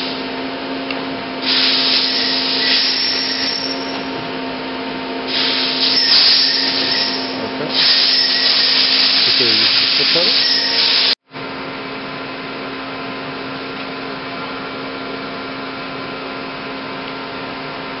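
Mori Seiki SL25B CNC lathe powered up, giving a steady hum with several fixed tones. Up to about eleven seconds in, stretches of loud rushing hiss lasting a few seconds each come and go over the hum. After a sudden brief dropout, only the steady hum remains.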